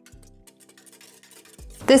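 A hand whisk beating egg and oil in a stainless steel bowl, faint, over quiet background music with held notes.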